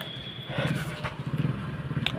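A steady low engine hum, like a motor vehicle running, with a thin high tone that stops about half a second in.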